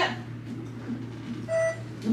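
A single short electronic beep about one and a half seconds in, over a steady low hum.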